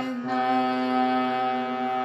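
Harmonium reeds sounding a single held note of a shabad melody, played one key at a time, after a brief break between notes just after the start.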